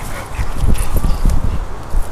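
A dog moving about on grass and mouthing an old, cracked, deflated basketball: soft scuffs and a few light knocks, over a steady low rumble.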